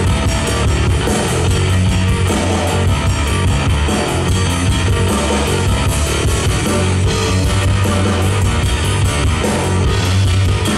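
Live instrumental rock band playing loudly: a two-handed tapped Chapman Stick carrying a heavy bass line over a drum kit, with cymbal strokes keeping a steady beat.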